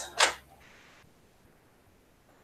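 A single short, sharp click as a cordless iron is lifted off its base, followed by a brief faint hiss.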